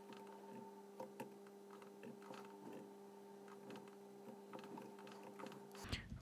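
Near silence: a faint steady electrical hum, with a few scattered soft clicks from working at a computer.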